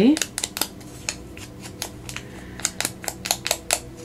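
Foam ink applicator dabbed along the torn edge of a piece of vellum, inking it: a run of quick, crisp taps and crackles of the stiff paper, coming faster near the end.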